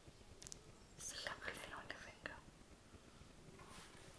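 A person whispering for about a second, starting about a second in, after a couple of faint clicks.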